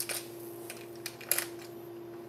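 A few light clicks and rattles of metal jig heads and hooks being handled in a plastic tackle-box compartment, the sharpest about a second in.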